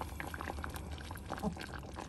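Thick tomato marmalade bubbling in a stainless steel pot as it is stirred with a wooden spoon: irregular small pops and crackles of the boiling, sugary mixture, over a low steady hum.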